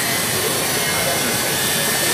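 Loud, steady hiss and whir of glass-cutting machinery in a crystal factory, as crystal glassware is sliced into pieces.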